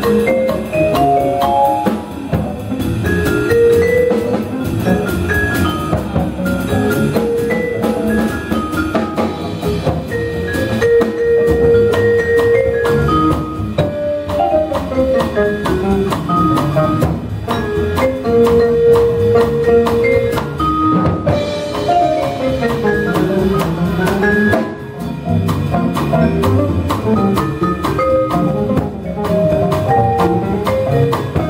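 Live jazz quartet playing: a vibraphone carries the melody in runs of mallet-struck ringing notes, with some notes held. It is backed by archtop guitar, plucked upright bass and a drum kit.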